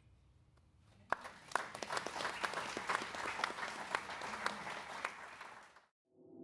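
Audience applauding: dense clapping begins about a second in and cuts off suddenly near the end.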